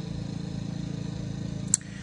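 Steady running hum of a motor or engine, with one sharp click near the end.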